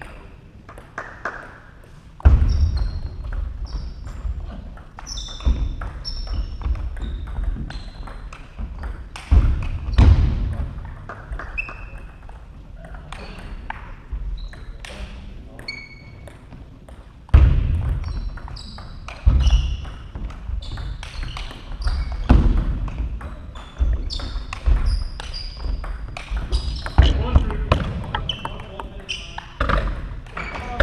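Table tennis rallies: the ball clicking sharply off bats and table, some hits with a short high ping, and loud low thuds from the players' footwork on the wooden hall floor.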